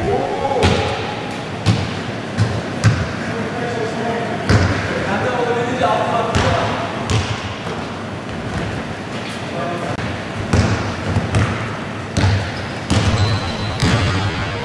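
A basketball bouncing and thudding on a wooden gym floor in an echoing hall, with irregular knocks through a game of play. Players shout to one another, loudest about five seconds in.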